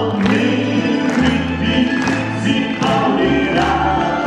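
Live band music with a male and a female singer singing together over plucked mandolins and guitars, accordion and violin, with a bass line changing note about once a second.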